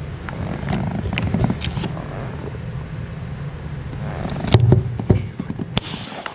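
A steady low hum, with scattered clicks and knocks from handling and a few louder knocks about four and a half seconds in.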